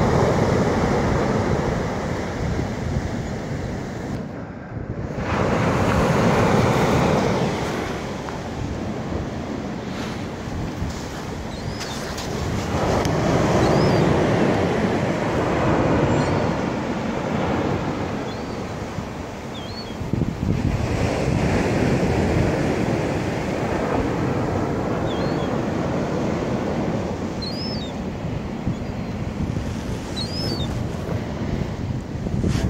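Ocean surf breaking and washing up the beach, rising and falling in slow surges about every seven to eight seconds.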